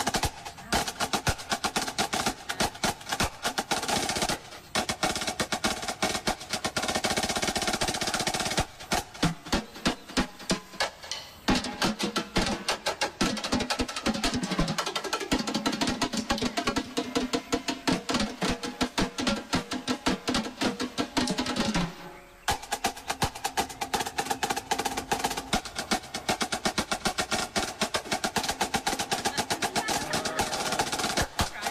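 Marching drums, led by snare drums, played fast in dense strokes and rolls, with a few short breaks between phrases.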